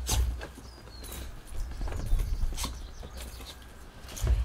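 A dog scuffling about close by: scattered clicks and taps over a low rumble.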